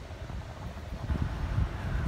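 Low, uneven rumbling with soft bumps, louder from about a second in: handling noise near the microphone.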